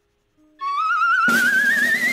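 Quiz-show sound effect played in to reveal the answer: after a brief silence, a wavering, whistle-like tone slides slowly upward, with a hiss joining it a little past halfway.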